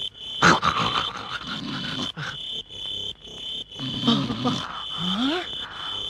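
Crickets chirping in a steady, pulsing high trill, a film's night-time ambience. Under it come intermittent low vocal sounds, one rising in pitch about five seconds in.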